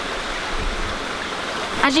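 Rain falling on a river, a steady even hiss of water.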